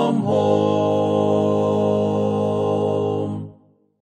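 Hymn singing holding its final chord: the chord changes a moment in, is held steadily, then stops and dies away shortly before the end.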